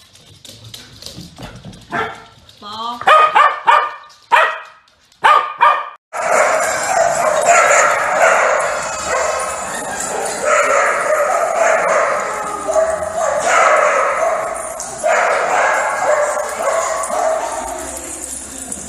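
Corgi puppy barking and yipping in short separate bursts. About six seconds in, the sound cuts abruptly to a dense, continuous din with music in it.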